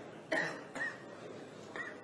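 A person coughs once, sharply, about a third of a second in, over a low room background. Two smaller, fainter sounds follow.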